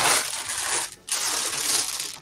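Glass marbles clinking and clattering against each other inside a plastic bag as the bag is lifted and handled, in two stretches with a brief pause about a second in.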